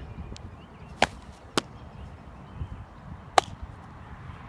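Three sharp smacks of a softball slapping into leather gloves as it is pitched and thrown back, about a second in, shortly after, and again near the end.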